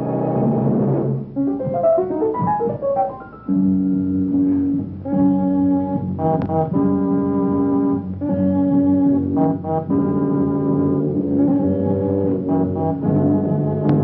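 Horror-film score music: a run of short notes in the first few seconds, then held brass chords that change every second or two.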